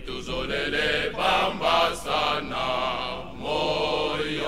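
Male choir singing together in sustained phrases, with brief breaks between phrases.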